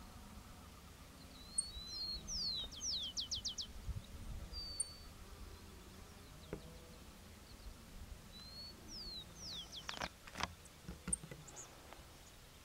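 Carbon sierra-finch (Phrygilus carbonarius) singing two short phrases, each a few high notes followed by a quick run of five or six descending whistled sweeps. A couple of sharp knocks come about ten seconds in.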